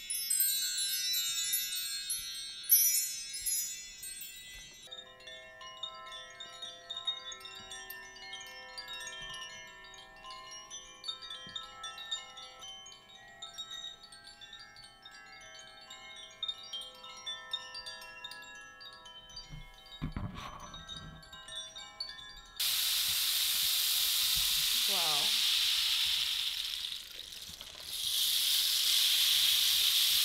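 Bar chimes swept by hand, a cascade of bright shimmering metal tones for the first few seconds, after which a lower set of ringing tones lingers and slowly fades. A little after twenty seconds comes a soft knock, then a rain stick starts: a steady rushing patter of falling pellets that dips briefly near the end and starts again.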